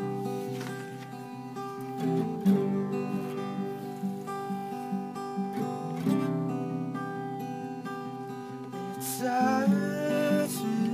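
Acoustic guitar strumming chords in an instrumental passage of a song, with a singing voice coming in near the end.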